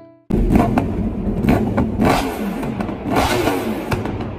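Motorcycle engines revving hard, cutting in suddenly about a third of a second in, with engine pitch falling in several glides between blips of the throttle.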